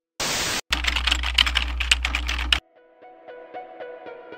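Edited transition sound effects: a short burst of static, then about two seconds of rapid clicking over a low hum that cuts off suddenly. A light plucked-note music melody starts about three seconds in.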